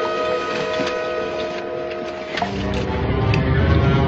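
Orchestral film score: sustained held string tones, then about two and a half seconds in a dark, low swell comes in and the music grows louder.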